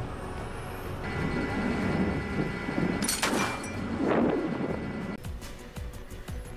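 Oshkosh JLTV's diesel engine running as the armored tactical truck drives along a gravel track, swelling louder twice in the middle.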